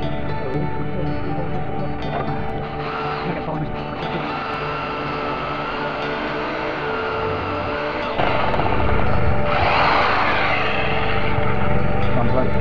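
Corded hammer drill boring into a concrete block, its motor running with a steady whine that gets louder about eight seconds in, over background music.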